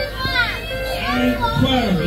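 Young children's high voices calling and chattering as they play, with music playing in the background.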